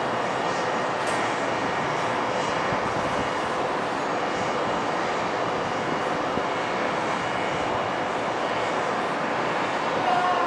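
Steady, even roar of city background noise heard from high above the street, without change or distinct events.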